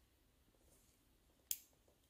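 Near silence broken by one short, sharp plastic click about one and a half seconds in: the safety cap snapping into place on the port of a subcutaneous infusion set.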